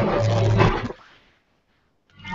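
Loud music with a steady low hum and held tones above it, breaking off about a second in and fading to silence.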